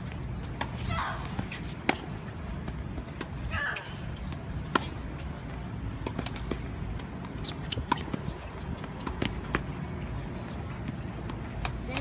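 Tennis balls struck with rackets and bouncing on a hard court: sharp pops a few seconds apart, the loudest about two and five seconds in, with fainter pops scattered around them, over a steady low outdoor rumble.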